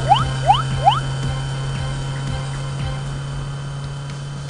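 Three quick rising whistle-like cartoon sound effects in the first second, over a steady low hum and a light background music bed.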